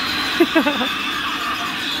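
Halloween animatronic figure with a prop chainsaw playing a loud, steady recorded chainsaw sound through its speaker as it thrashes, with a brief voice-like sound about half a second in.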